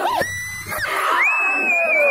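Men's high-pitched shouts and yells, short cries at first and then one long held yell in the second half.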